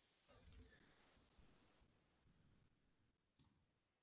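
Near silence: room tone over a call microphone, with a faint single click about half a second in.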